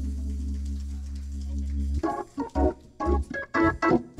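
Church organ holding a sustained chord over a steady bass, then about two seconds in breaking into short, punchy chords.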